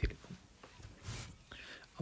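Quiet pause between spoken phrases: a person's faint breath sounds, with a short click at the very start.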